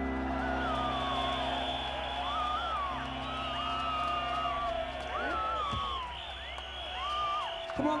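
A live band holding a sustained chord that dies away about seven seconds in, under a concert crowd cheering and whistling.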